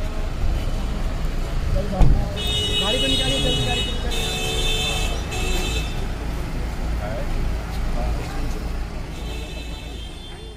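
Road traffic with a steady engine rumble and vehicle horns sounding in long steady blasts, from about two seconds in to past the middle and again near the end. About two seconds in there is a single sharp thump, the loudest moment. Voices are around.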